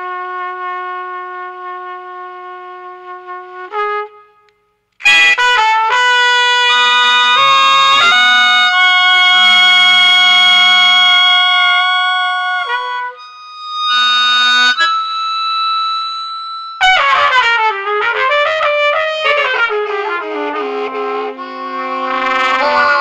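Improvised trumpet duo music. A long held note breaks off about four seconds in. After a brief gap, dense sustained tones layer together. Near the end the pitches bend and waver up and down.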